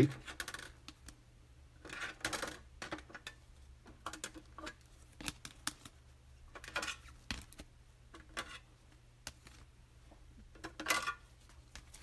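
Clear rigid plastic card holders clicking, clacking and scraping against each other as a stack of cased trading cards is handled and sorted, in short irregular bursts, with a louder rustle near the end.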